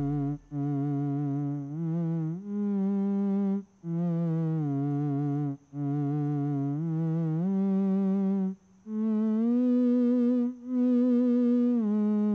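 Solo theremin playing a slow melody in a low-to-middle register, each note held with a wavering vibrato and the phrases broken by brief silences.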